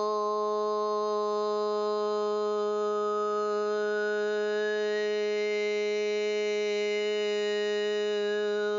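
Steady sustained musical drone held on one low pitch, rich in overtones, with an upper overtone slowly rising through the middle of it.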